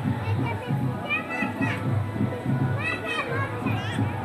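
Mixed voices, including high children's voices calling out about a second in and again near three seconds, over music playing in the background.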